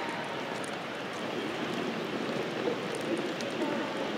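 Steady background noise of a large room, with faint indistinct voices underneath.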